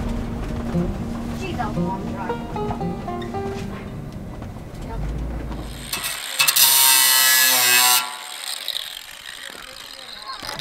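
Background music over a low vehicle rumble for the first six seconds. A little after six seconds in, a cordless drill bores into the wall of a steel drum for about a second and a half, loud and high-pitched, then stops.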